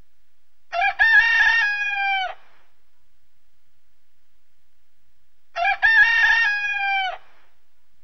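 A rooster crowing twice, about five seconds apart. Each crow is a short opening note followed by a long held note that drops in pitch at the end.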